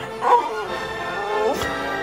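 A 15-year-old puggle barking: a short, loud bark about a third of a second in and a rising yelp in the second half, over background music.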